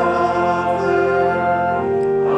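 Choir and congregation singing with organ accompaniment, long held chords that shift about every second.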